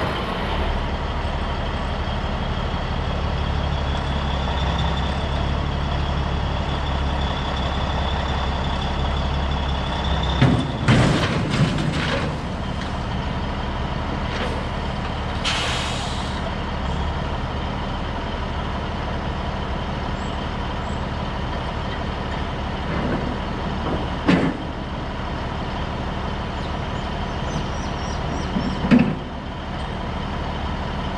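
Semi-truck diesel engine running steadily, with a high whine over it that stops about a third of the way in as the engine note drops. A burst of air hissing about halfway through and a few metal clunks as the trailer is being detached.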